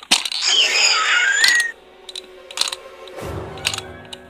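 A dinosaur screech sound effect with a wavering, gliding pitch for about a second and a half, followed by a few sharp clicks and a low rumble near the end.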